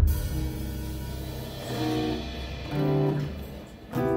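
Live band music: a low hit right at the start, then guitar chords ringing on, with two short guitar phrases about two and three seconds in, fading out near the end.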